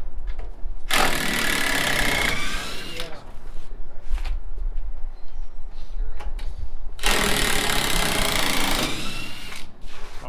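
Cordless power driver running on screws in a wooden pallet, in two bursts: one of about a second and a half starting about a second in, and one of about two seconds near the end, its motor whine falling off after the first burst.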